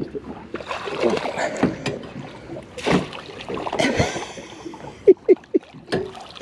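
Water splashing and sloshing beside a boat's hull as a hooked banjo shark (fiddler ray) is brought to the surface and scooped into a landing net. There are two louder splashes in the middle.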